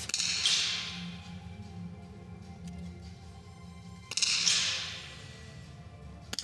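.22 small-bore target rifle shots in an indoor range: two sharp cracks about four seconds apart, each ringing out in the hall's echo for about a second, with fainter shots from other firing points between them.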